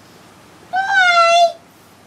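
A domestic cat meowing once: a single drawn-out call of just under a second that dips slightly in pitch at its end.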